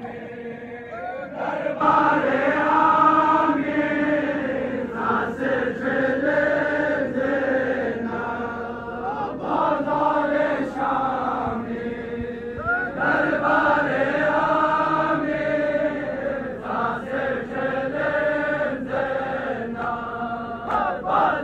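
Men's voices chanting a Balti noha, a Shia lament for Imam Hussain, in long sung phrases that rise and fall, with short breaks between them.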